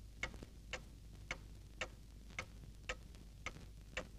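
A clock ticking faintly and steadily, about two ticks a second.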